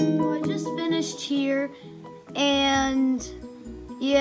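Background music led by a plucked acoustic guitar, picking quick notes.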